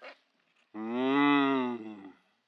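A man's long, low hummed "mmm" while eating, starting about three quarters of a second in and lasting over a second, its pitch rising and then falling.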